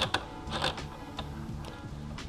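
A hex key turning a bolt in a motorcycle's plastic fairing, making a few light clicks and scrapes of metal on the fastener. Background music with a steady low line plays under it.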